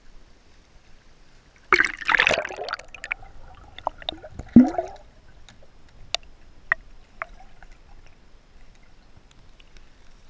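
Pool water splashing for about a second as a dachshund wades down the pool steps, then a loud gurgling plunge a couple of seconds later, followed by a few sharp drips.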